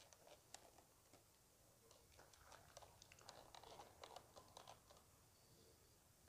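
Near silence with faint, scattered small clicks and handling noises, a little busier in the middle.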